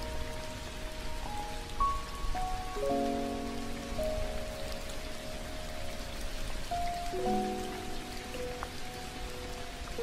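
Steady rain sound effect, with slow, soft instrumental music of long held notes and chords over it, changing every second or two.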